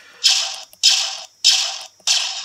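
E-11 blaster firing sound effect played three times from a BLTroniX prop board (DFPlayer Mini into a PAM8403 amplifier) through small round speakers: three single shots about 0.6 s apart, each a sudden hissy zap that fades within half a second, thin with no bass.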